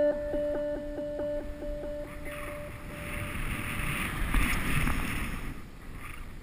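The last held notes of an electronic music track, pulsing rapidly, fade out over the first two seconds or so. Then comes the hiss of skis running through powder snow, with wind on the helmet-mounted camera's microphone, swelling about four seconds in and easing near the end.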